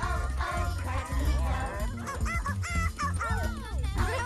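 Bright children's channel ident music over a steady bass, with short squeaky cartoon character calls that glide up and down in pitch.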